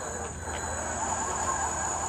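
Battery-electric remote-controlled helicopter tug (T1H2) setting off slowly with a helicopter loaded on it, its drive motors and wheels giving a steady whirring hum that swells slightly about half a second in.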